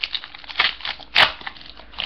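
Foil Yu-Gi-Oh! Battle Pack booster wrapper being torn open and crinkled by hand, with irregular crackles and one sharper, louder rip about a second in.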